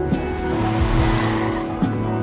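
A car pulling away with a tyre squeal: a hiss that swells and fades over about a second and a half, over steady music.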